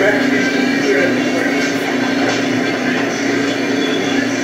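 A steady low hum over a hiss of noise, with faint, muffled voices underneath.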